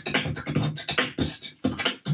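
A man beatboxing into a handheld microphone: a quick, steady beat of sharp mouth-made drum strokes, about four to five a second, over a low hum.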